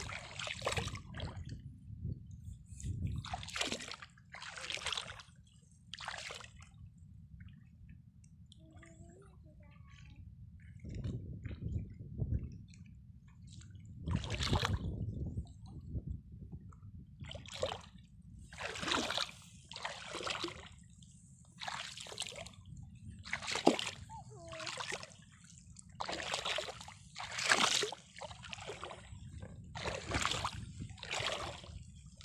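Footsteps wading through ankle-deep seawater over sand and seagrass, a splash at each step, irregular and roughly one a second, with a quieter spell about a third of the way in. A steady low rumble runs underneath.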